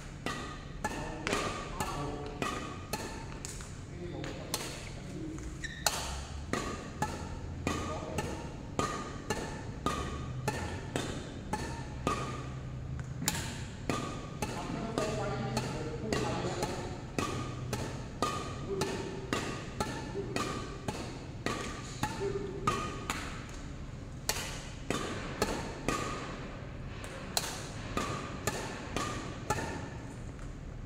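Badminton rackets striking a shuttlecock back and forth in a fast, continuous rally, about two sharp hits a second, echoing in a large hall.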